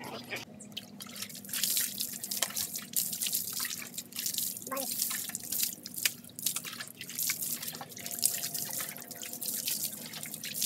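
Water poured from a plastic dipper over a wet Labrador puppy, splashing and dripping onto a concrete floor, from about a second and a half in.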